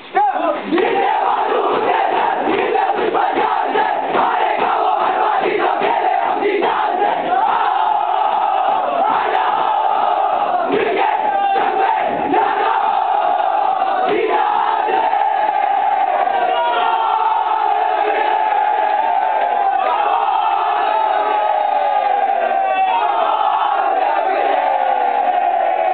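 A large group of young men shouting out a section song together in unison, many voices massed on one line, with a rhythmic beat under the first half.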